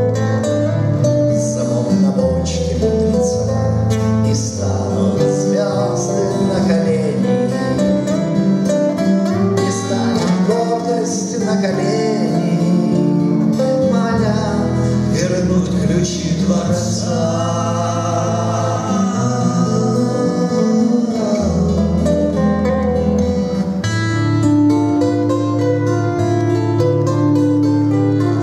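Two acoustic guitars played together under male singing: a Russian bard song (author's song) for two voices and guitars.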